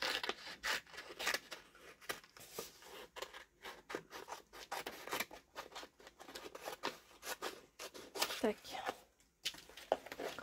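Small scissors cutting through a printed paper page in a quick, irregular run of snips, rough-cutting a figure out of the sheet.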